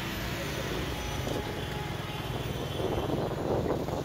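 City street traffic: a steady low engine rumble with road noise, swelling louder near the end as a motorcycle comes alongside.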